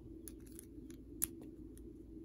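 Faint plastic clicks of small LEGO plates being handled and pressed together, with one sharper click a little over a second in.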